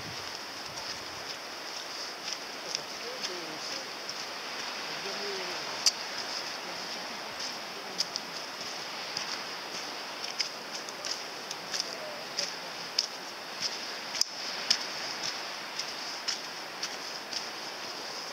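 Footsteps on a narrow dirt footpath, short irregular crunches about one to two a second, over a steady outdoor hiss. Faint, distant voices are heard a few seconds in and again around the middle.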